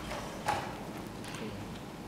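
Background noise of a courtroom through an open microphone, with a sharp knock about half a second in and a fainter one later.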